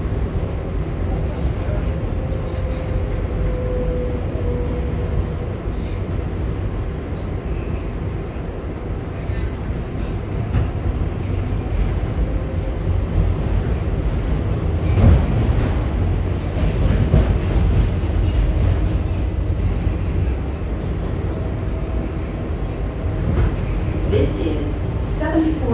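Inside an R188 subway car running on elevated track: a steady rumble of wheels and running gear, with a faint whine a few seconds in. About fifteen seconds in comes a run of louder, sharp clacks from the wheels.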